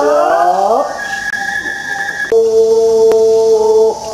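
Music for a Japanese three-lion dance: a high bamboo flute holds a steady note, then about two and a half seconds in a male voice takes up a long held chanted note of the dance song. A few sharp taps on the dancers' belly drums sound through it.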